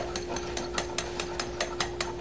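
Rapid, evenly spaced clicking, about five clicks a second, over a faint steady hum.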